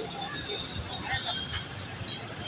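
Street ambience: traffic noise with indistinct voices of people nearby, fairly steady.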